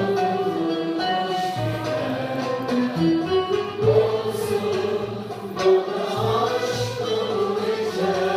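A live Turkish classical music choir and instrumental ensemble performing, with singing over bowed and plucked strings and a repeating low bass note.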